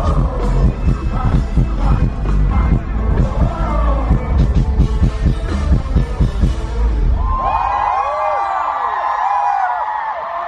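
Live pop concert music with a heavy pounding bass beat, heard from the audience. About seven seconds in, the beat cuts out, leaving many high voices screaming and cheering over one another.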